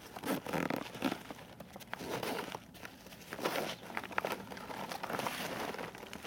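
Zipper on a nylon backpack's outer compartment being pulled open and the contents handled, with irregular crinkling and rustling throughout.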